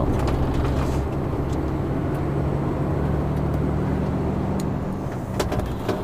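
Heavy goods vehicle's diesel engine running under way, a steady drone heard from inside the cab, with a few sharp clicks near the end.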